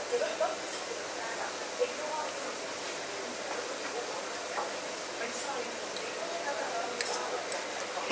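Hot water running from a Franke drinks machine's spout into a glass of fresh mint leaves, a steady pour for mint tea.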